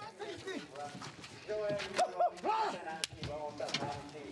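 Voices calling out in short bursts, with a few sharp knocks in between.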